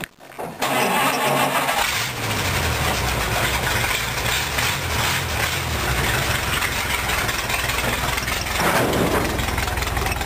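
Rat rod's engine cranked on the starter, catching about two seconds in and settling into a steady low idle, with a brief rise in engine noise near the end as the car starts to roll.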